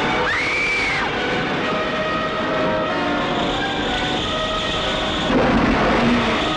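Film trailer soundtrack: a woman's scream rising and held for about a second at the start, then a loud, dense mix of dramatic music and rumbling effects, with a louder crash near the end.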